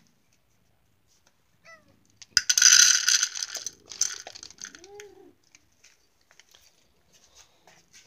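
Dry pet kibble poured from a cup into a feeding bowl: a loud rattling rush about two and a half seconds in, lasting under two seconds, with a few scattered pellets after it. A short, faint cat meow follows about five seconds in.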